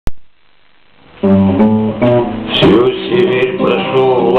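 An acoustic guitar starts the song's introduction about a second in, with notes and chords picked one after another. A short click is heard at the very start.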